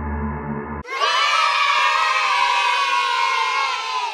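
Background music with low, steady drone-like tones cuts off just under a second in. A loud crowd cheering and shouting starts at once, at full volume, and carries on to the end.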